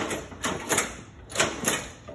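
Repeated short metallic clunks and rattles from a Poulan riding mower's brake pedal and parking-brake linkage being worked, in pairs about a second apart. The owner suspects the brake is stuck, which keeps the tractor from rolling in neutral.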